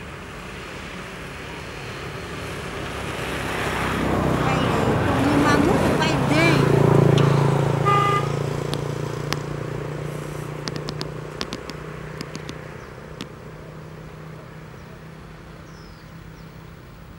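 A motor vehicle passing: it grows louder to a peak about seven seconds in and then fades away, with a short horn toot about eight seconds in. Voices sound briefly near the loudest part, and a few sharp clicks follow as it fades.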